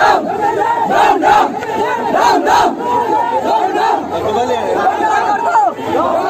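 A large crowd of men shouting all at once, many loud voices overlapping without a break.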